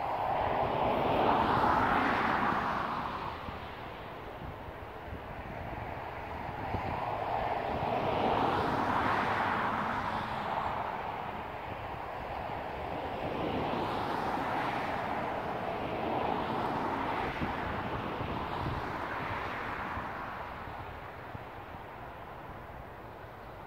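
Vehicles passing by: a rush of tyre and engine noise that swells and fades several times, loudest near the start and again about nine seconds in.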